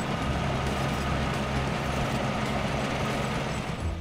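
Small red Tilmor row-crop tractor's engine running steadily as it drives slowly through a field pulling cultivator tools, a steady low hum with some mechanical clatter.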